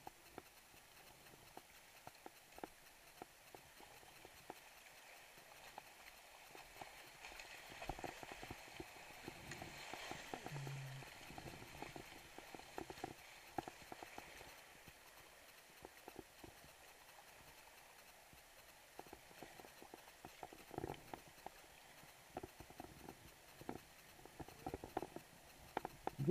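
Faint kayak paddling: scattered light knocks and splashes from the paddle strokes, with a soft rush of moving creek water swelling in the middle.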